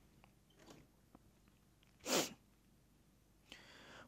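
A single short, sharp burst of breath noise from a person about two seconds in, between stretches of near silence, with a faint breath just before speaking resumes near the end.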